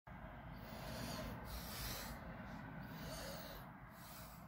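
Faint breathing close to the microphone, a hiss swelling and fading about once a second, over a low steady rumble.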